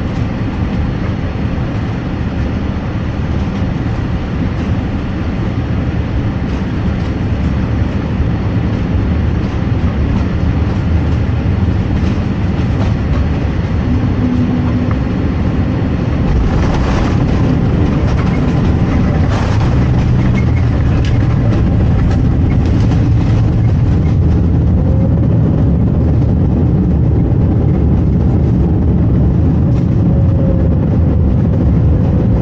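Airliner cabin noise during the landing: a steady low rumble on short final, then several knocks and thumps about seventeen to twenty seconds in as the wheels meet the runway. The rumble gets louder as the jet slows on the rollout.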